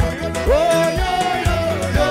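Loud music with a steady beat about twice a second, and a melodic line that slides up in pitch about half a second in.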